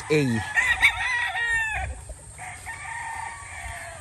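Gamefowl rooster crowing, one long crow from about half a second in to about two seconds, with fainter rooster calls after.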